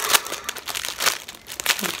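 Plastic packaging crinkling and rustling in irregular bursts as it is handled.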